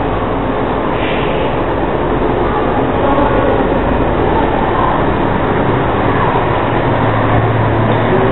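Hair dryer blowing steadily on the face, drying the freshly applied aging makeup.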